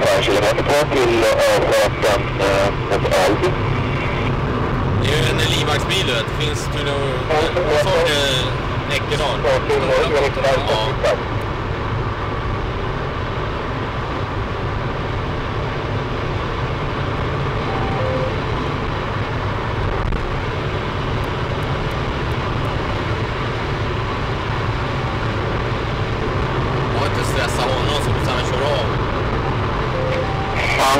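Inside a Saab 9-5 Aero driven hard on a motorway: steady engine, tyre and wind noise as the car speeds up from about 130 to 160 km/h. Voices come in bursts over roughly the first eleven seconds.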